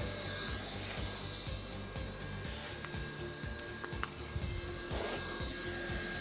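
Scraping and rubbing as a small strip of weld rod is rubbed against the tip of a hot-air welding gun to clean it of debris, with the welder's blower hissing steadily underneath.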